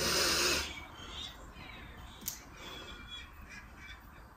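A woman's short breathy vocal sound, lasting about half a second, then a quiet room with one faint click about two seconds in.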